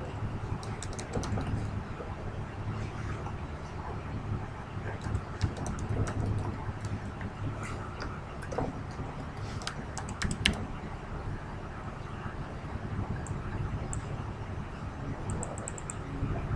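Computer keyboard typing in a few short runs of keystrokes, the loudest about ten seconds in, over a steady low hum.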